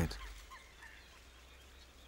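Near silence: faint background ambience, with a few barely audible specks of sound.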